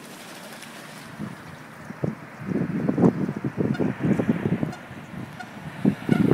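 Mallard ducks quacking: a run of short, irregular quacks starting about halfway through, over a faint steady hiss.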